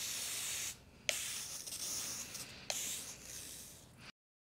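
Handheld wand sprayer misting carpet spot pre-treatment onto carpet in long hissing sprays. The first spray stops just under a second in. Two more follow, each starting with a click, and the last fades out near the end.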